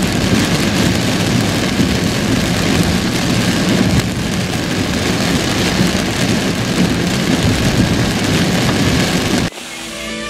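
Heavy rain hitting a car's windshield and body, heard from inside the car, loud and steady, with a low rumble underneath; it cuts off suddenly near the end.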